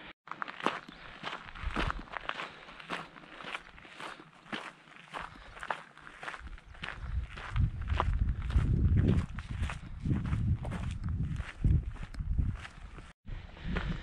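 A hiker's footsteps at a steady walking pace, about two steps a second. In the second half, wind rumbles on the microphone.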